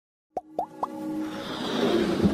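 Animated logo intro sting: three quick plops, about a quarter second apart, starting a third of a second in, then a held tone and a rising swell that builds toward the music.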